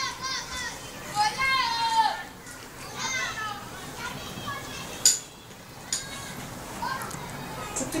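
Children's high-pitched voices calling and chattering in a small room, with a couple of sharp clicks about five and six seconds in.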